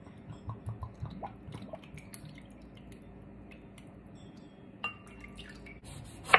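Thick sauce poured from a glass bottle into a measuring cup: faint drips and glugs over the first two seconds, then a single sharp click near five seconds in.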